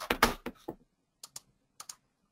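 Computer keyboard keystrokes in an irregular run: a quick cluster of clicks in the first half-second, then a few lighter pairs of taps.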